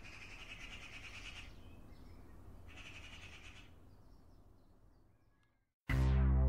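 Faint birdsong: two trilling calls, each about a second long, then a few faint chirps, over a low steady rumble that fades out. Music cuts in just at the end.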